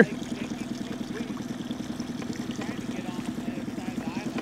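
Small fishing boat's motor running steadily, a low pulsing hum.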